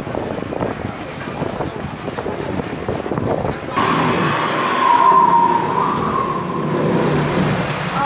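Outdoor theme-park bustle that cuts, about four seconds in, to the louder ride noise of a log flume in a tunnel: rushing water with a steady whine and a low rumble from the ride machinery.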